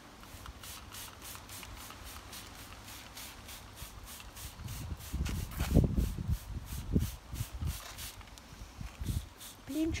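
Hand trigger spray bottle squirting liquid onto hosta leaves in a quick run of short sprays, about three a second. From about halfway through, louder low rumbling and thumps sit under the spraying.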